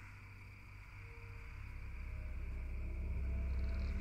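Low, rumbling ambient drone that swells in level over the first three seconds, with faint held tones above it: a dark ambient music bed fading in.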